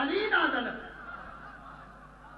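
A man's raised voice over a public-address microphone: one loud, drawn-out exclamation with a pitch that rises and then falls, which ends under a second in. Fainter voice sounds follow.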